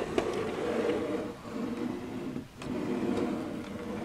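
A small OO gauge model wagon pushed slowly by hand along model railway track, its wheels rolling on the rails while a pen taped to its side drags along paper, making a steady rolling, scratching sound. The sound dips briefly about two and a half seconds in.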